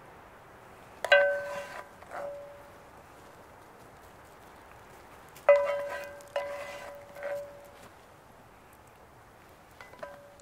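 A spatula knocking and scraping against a cast iron pan, which rings with a clear bell-like tone after each strike. The strikes come in two groups, about a second in and about five and a half seconds in, with a few weaker knocks after each.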